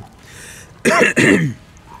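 A man clearing his throat: two short rasps in quick succession about a second in.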